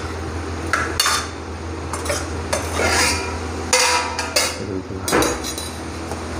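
A metal spatula scraping and clinking irregularly against a steel cooking pan as spiced, chopped ridge gourd is stirred, with a steady low hum underneath.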